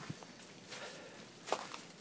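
Faint footsteps on hail-covered garden ground: a few soft steps over a low hiss.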